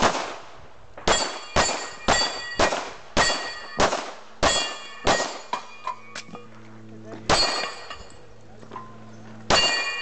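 Pistol shots fired in quick succession, about a dozen, most followed by the metallic ring of steel targets being hit. The pace is fast early on, with gaps of a second or two between the last shots.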